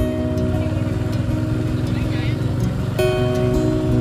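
Background music with held notes and a brief wavering sung line about two seconds in, over the steady low rumble of a moving motorbike.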